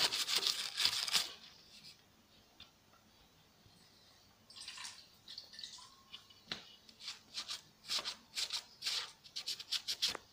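Wet sponge scouring pad scrubbing the rusty, silicone-caked metal frame of an old belt sander. After a quiet pause, quick short rubbing strokes start about halfway through and keep going, about two a second.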